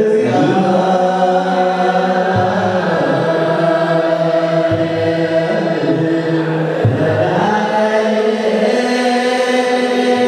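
A group of men's voices chanting together in Eritrean Orthodox liturgical chant, holding long sustained notes that shift in pitch every few seconds.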